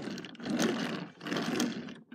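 Plastic wheels of a Transformers Cybertron Red Alert toy car rolling across a plastic bin lid, pushed by hand in two passes, back and forth, with a brief dip in between.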